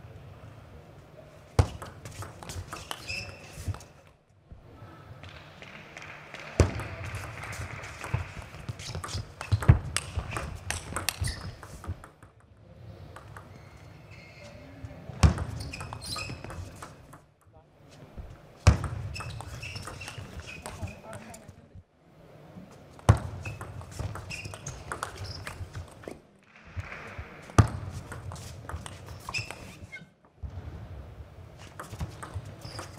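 Table tennis rallies: the plastic ball clicking off the bats and the table in quick back-and-forth exchanges, point after point, with a few loud sharp hits standing out.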